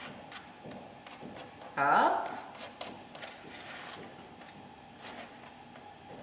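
Table knife scraping and lightly clicking against a ribbed aluminium ramekin while mashed potato is spread smooth, in faint scattered clicks. About two seconds in there is a brief vocal sound from a person.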